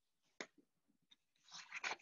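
Pages of a hardcover picture book being handled and turned: a single faint tap a little under half a second in, then rustling paper in the last half second.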